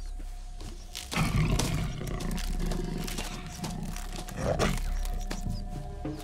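Film soundtrack music with a wild animal roaring over it. The roar comes in suddenly about a second in and swells again around four and a half seconds.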